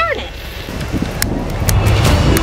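A boy's voice trailing off, then low rumbling noise on a camcorder microphone with a few short, sharp clicks about a second in and near the end.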